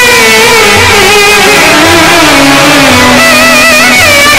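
Loud instrumental interlude from an Egyptian ensemble: violin and ney flute play a wavering, ornamented melody over a low keyboard beat that lands about once a second.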